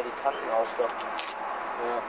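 Brief speech from a person's voice, in a few short bursts.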